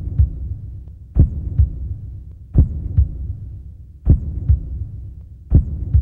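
Heartbeat sound effect: pairs of deep thumps, about one pair every one and a half seconds, over a low hum.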